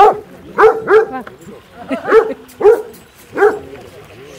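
A dog barking about six times in short, loud, irregular barks, in twos and singly, over faint background voices.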